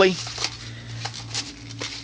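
Nylon magazine pouch loaded with AR-15 magazines being handled and turned over: soft rustling of webbing with a few light clicks.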